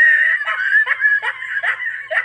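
A person laughing, high-pitched, in a run of short bursts about two a second.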